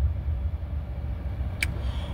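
Low steady rumble of a car heard from inside the cabin, with one short click about one and a half seconds in.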